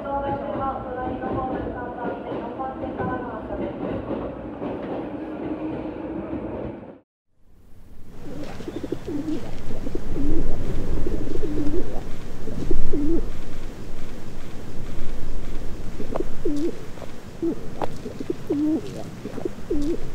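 A train running with a shifting whine that cuts off about seven seconds in. Then a pigeon coos over and over, about once a second, over a low outdoor rumble.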